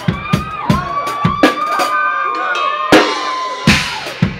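Live drum kit in a solo: scattered bass drum and snare hits, with a loud cymbal crash near the end. Over them, a crowd is cheering and yelling.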